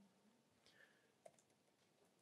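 Near silence with a few faint clicks of a computer keyboard being typed on, the sharpest a little past the middle.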